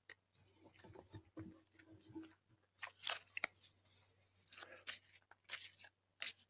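Faint handling of a tarot card deck: soft rustles and small clicks and taps of the cards. A faint high warbling sound comes twice, briefly near the start and again from about three seconds in.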